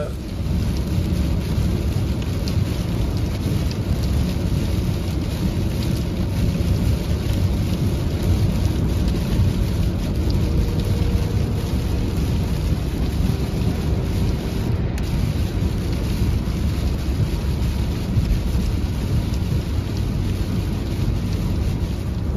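Steady cabin noise of a car driving on a wet highway in the rain: a deep rumble of tyres and road with a hiss of spray and rain on the windshield, with faint scattered ticks of raindrops.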